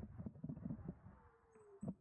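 Electric kick scooter slowing to a stop: rumbling wheel and road knocks fade out, and a faint falling whine from the motor winds down. One sharp knock comes near the end.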